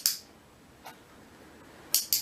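Dog-training clicker clicking: a sharp double click at the start, a faint tick about a second in, and another sharp double click near the end, marking the dog's bow.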